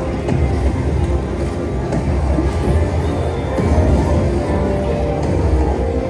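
Thunder Drums slot machine bonus-round music: a loud, steady electronic soundtrack with a heavy bass and dense sustained tones, with a few faint hits every second or two.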